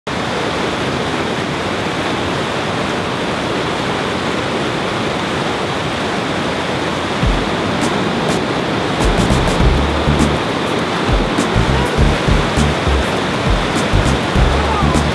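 Whitewater of a Class IV river rapid rushing steadily over boulders. About seven seconds in, irregular deep thumps join it with faint high ticks over the top, most likely a music track's beat.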